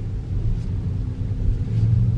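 Low steady rumble inside an electric car's cabin as the car rolls slowly, turning into a charging stall, with a low hum growing louder near the end.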